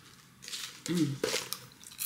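A person chewing popcorn with crunching and wet mouth sounds, with a short hum of the voice about a second in.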